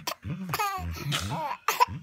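A baby laughing in short bursts, with an adult laughing along, delighted by the game of "gotcha".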